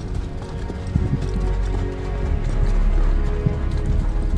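Horses walking, their hooves in an irregular clip-clop, over background music with sustained notes.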